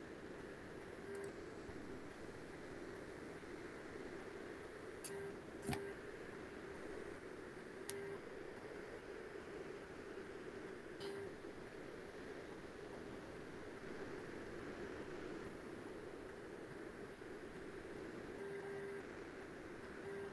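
Low, steady background hiss from an open microphone, with a few faint clicks about six and eight seconds in.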